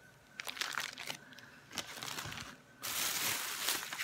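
Plastic grocery packaging crinkling as it is handled, with scattered crackles at first, then a louder continuous rustle of plastic from a little under three seconds in.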